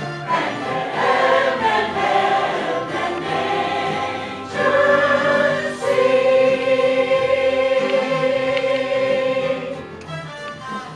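Mixed choir of men and women singing, with long held chords through the second half that die away near the end.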